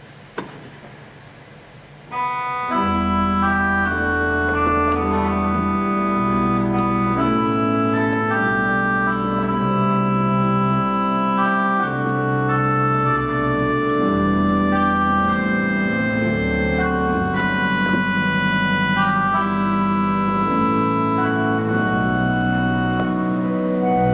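A click, then about two seconds in the 1964 Balbiani Vegezzi-Bossi pipe organ begins a slow passage of held notes showing its oboe reed stop, with chords and a low pedal bass beneath it.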